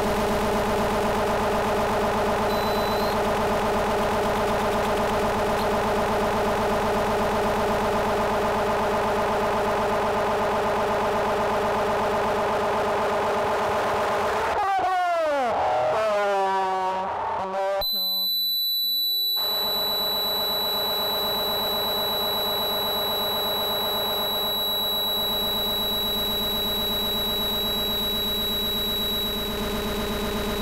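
Electronic noise from homemade analogue synthesizer circuits: a dense drone of many steady tones. About halfway, the pitches sweep down and up. The sound then cuts for a moment to a thin high whine before the drone comes back, with the whine still over it.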